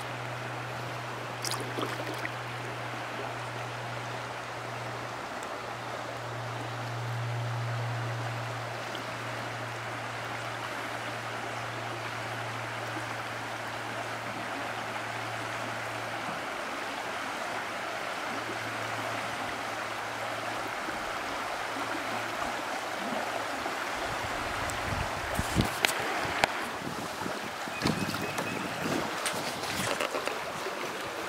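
Creek water running steadily as a kayak floats along, with a low hum underneath for roughly the first half and a few knocks and thumps near the end.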